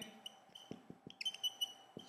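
Faint short high-pitched squeaks in a quick run through the second half, with a few soft clicks before them.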